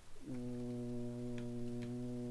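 A low voice holding one long, level hesitation sound, 'uhh', for nearly two seconds, with a couple of faint computer keyboard clicks as text is typed.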